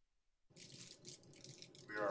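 Silence, then about half a second in a microphone feed opens suddenly onto a room: a low, noisy room tone with faint rustling and handling sounds. A voice starts just before the end.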